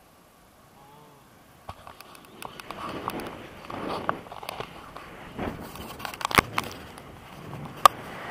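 Wind buffeting and rustling on an action camera's microphone in flight, mixed with the clicks and knocks of the camera being handled and turned. It starts about two seconds in after a quiet opening, and two sharp clicks come near the end.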